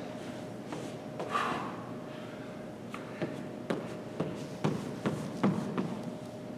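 Light taps and shuffling of hands and sneakers on a hardwood gym floor as a person walks out into an inchworm, with irregular taps in the second half. A soft breath about a second in and a faint steady hum lie underneath.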